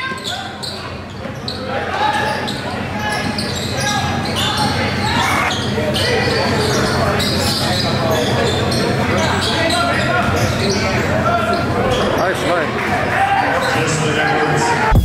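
A basketball bouncing on a hardwood gym floor with repeated sharp impacts as players dribble, amid voices and crowd chatter echoing in a large gym.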